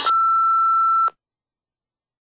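A single steady, high-pitched electronic beep, about a second long, that cuts off suddenly.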